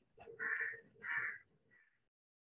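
A crow cawing: two short harsh calls about half a second apart and a fainter third near the end.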